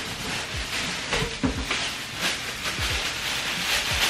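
Plastic bag and tissue paper crinkling and rustling as a packaged shirt is pulled out of a cardboard box, with a few deep falling bass thuds underneath.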